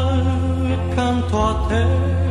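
A 1965 Italian pop ballad recording: the band holds sustained notes over a steady bass line, and the male lead singer comes in with a new line near the end.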